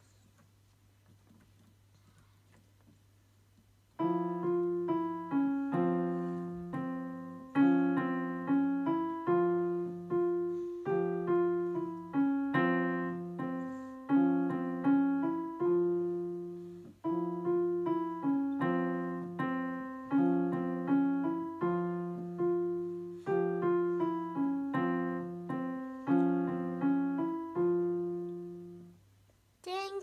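Digital piano playing a simple beginner piece at a moderate tempo, one note at a time: a low held bass note repeated under a short melody. The notes begin about four seconds in, after near silence, and stop just before the end.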